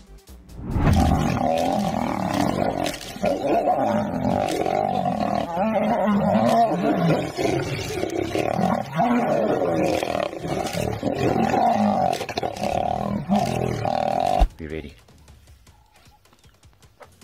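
Two male lions fighting, a continuous loud snarling and roaring that starts about a second in and cuts off abruptly near the end.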